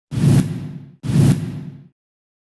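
Two identical whoosh sound effects with a low boom, from a news channel's logo ident. One comes just after the start and the other about a second in; each hits suddenly and fades out in under a second.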